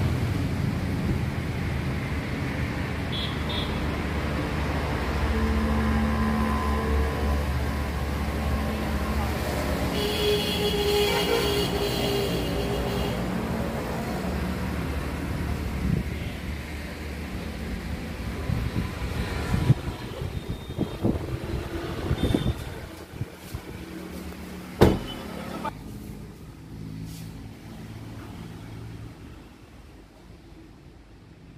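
Low, steady motor-vehicle rumble that fades over the second half, with scattered knocks and one sharp click about 25 seconds in.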